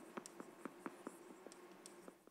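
Chalk writing on a blackboard: a faint, uneven run of short taps and scratches, about four or five a second, as the letters are written.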